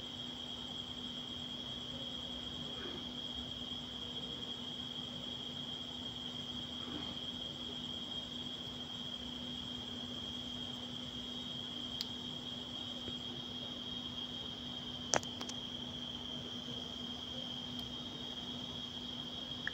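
Faint steady high-pitched whine over a low hum, with two small clicks about twelve and fifteen seconds in; no stitching rhythm is heard.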